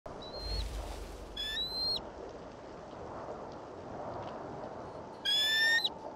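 A bird's high whistled calls: three short calls, a faint one at the start, a louder one about a second and a half in, and the loudest near the end, each held briefly and then dropping off, over a steady rushing hiss.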